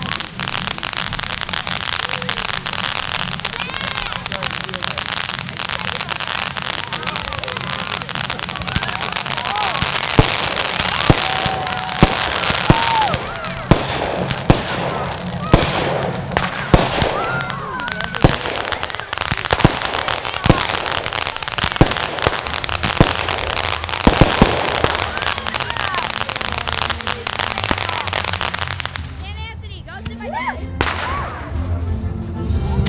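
Consumer fireworks: a ground fountain hissing as it throws sparks, then from about ten seconds in a run of sharp bangs and crackles from aerial shells bursting overhead, easing off near the end.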